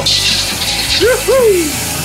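Soy sauce hitting a hot wok of stir-frying chicken, sizzling loudly for about a second as it is poured in. Background music runs underneath.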